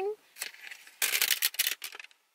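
A cardboard sandwich wedge pack with a clear plastic window being pulled open. There is a faint click, then about a second of crinkling and tearing packaging in the second half.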